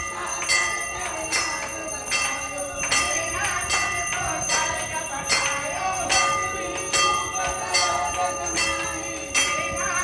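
Temple bell struck over and over at a steady pace during aarti. The strokes come about every half second and run into one another, leaving a continuous metallic ringing.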